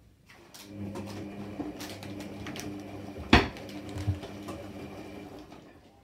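Electra Microelectronic 900 front-loading washing machine turning its drum: the motor hums steadily for about five seconds and then winds down, with a sharp knock about three seconds in, the loudest sound, and a lighter one a moment later.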